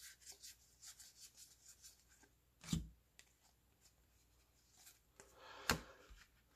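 Baseball cards being thumbed through one by one, a quick run of faint flicks and rubs of card on card. Then comes a louder knock about two and a half seconds in, a quiet stretch, and a few more knocks near the end as cards are set down on the table.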